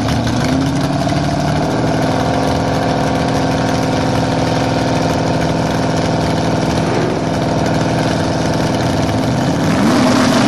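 Drag-race cars' engines running at a loud, steady idle while staging at the starting line, their pitch starting to rise as they rev up near the end.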